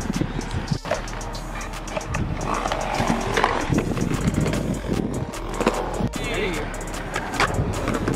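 Stunt scooter wheels rolling on skatepark concrete, with repeated sharp clacks and knocks from the deck and wheels striking the surface, under background music.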